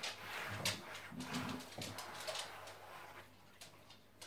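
Rustling and scraping of hands sliding over a large cloth-topped gaming mouse mat as it is lifted and turned over on a desk, with a few soft knocks.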